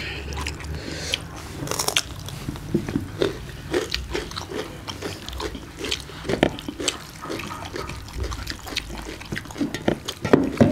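Close-up eating sounds: chewing and mouth smacks, with wet squishing and clicks from hands mixing rice with daal on metal plates, in irregular short snaps.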